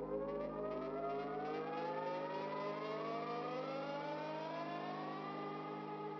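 Synthesized riser sound effect: several pitched tones glide slowly and steadily upward over a held low drone, levelling off near the end.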